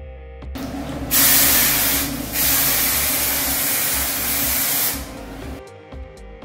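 Aerosol hairspray sprayed in two long bursts of hiss, the second about two and a half seconds long, with a short dip between them about two seconds in. Background music plays underneath.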